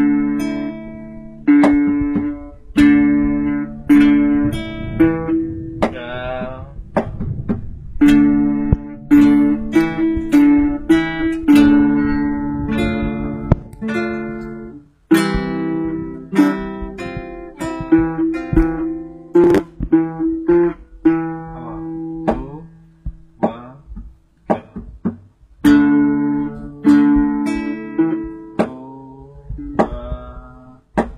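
Guitar music: chords struck one after another, each ringing and fading before the next, with a brief break about fifteen seconds in.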